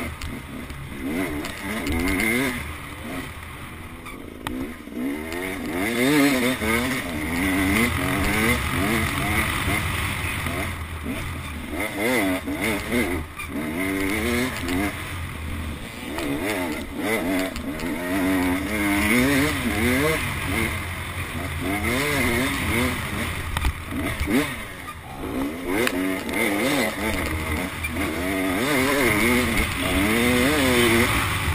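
Enduro dirt bike engine under way on a rough trail, its revs repeatedly climbing and dropping as the throttle is worked through the gears.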